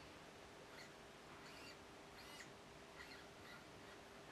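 Near silence, with a few faint, short high-pitched whirs and squeaks from the hobby servo and linkage moving a model submarine's hydroplane, over a faint steady hum.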